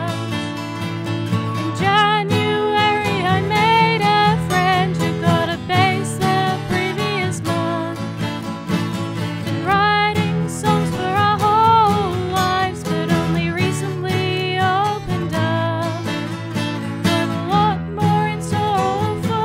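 A band song: a singing voice with vibrato over guitars, bass and a steady drum beat.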